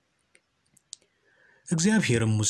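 A pause in a voice reading aloud, holding only a few faint mouth clicks and a soft intake of breath, then the reading voice starts again near the end.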